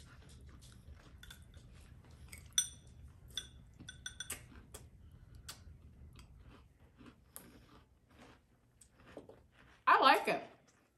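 A metal spoon clinking and scraping in a ceramic bowl of cereal and milk: scattered light clicks, with a few short ringing clinks between about two and a half and four and a half seconds in, the first the loudest.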